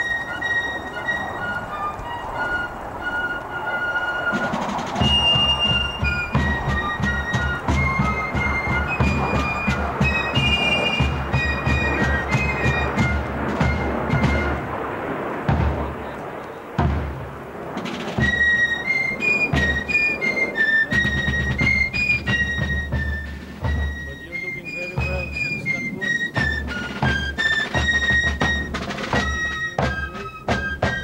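Fife and drum music: high fifes playing a quick march melody, with drums coming in about five seconds in and keeping a steady beat.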